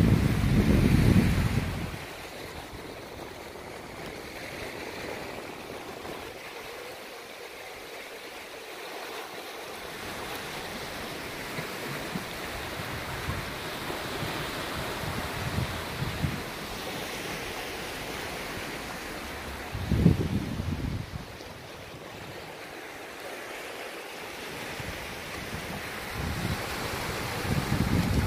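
Small sea waves washing and breaking over a flat rock shelf, a steady rushing surf. Low rumbles of wind on the microphone come in the first couple of seconds, briefly about twenty seconds in, and again near the end.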